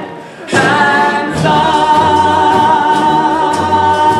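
Two male voices singing a musical-theatre duet with accompaniment. After a brief break they come back in and hold one long final note that stops near the end.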